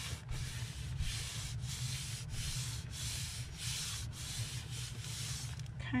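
Hands rubbing over paper in repeated strokes, about one and a half a second, smoothing a freshly glued paper piece flat onto a journal page.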